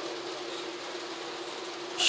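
A steady hum on one held tone over a hiss of background noise, unchanging throughout.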